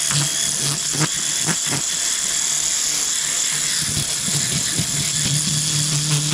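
Low-voltage electric fish scaler running against the side of a large snook, its motor humming in short spurts and then steadily near the end, with the scraping of scales being stripped off.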